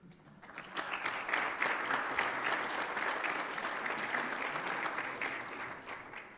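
Audience applauding: dense hand clapping that builds up over the first second, holds steady, and fades out near the end.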